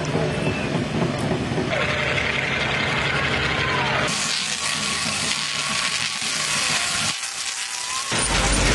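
From about four seconds in, a large Tesla coil firing, its sparks giving a harsh, crackling electric buzz as they strike a performer in a metal Faraday suit. Before that, crowd noise with voices.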